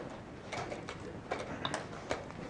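A quick run of sharp clicks and knocks: chess pieces being set down on the board and the chess clock being pressed in fast blitz play.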